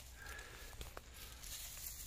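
Faint rustling of dry cut branches and brush being handled, with two light taps about a second in.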